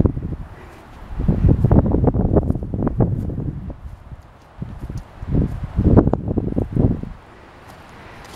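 Wind buffeting the microphone in two long stretches of low rumbling noise, with footsteps on grass.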